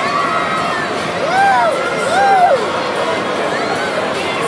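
Chatter of several people, with two long voice calls that rise and fall in pitch, about a second and a half and two seconds in.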